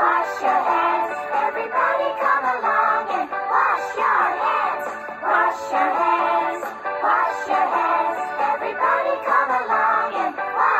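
A children's hand-washing song playing: music with sung vocals.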